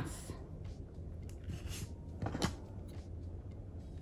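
Quiet handling sounds of elastic beading cord being folded and a pair of small scissors picked up against a wooden tabletop, with a couple of soft rustles about two seconds in, over a steady low hum.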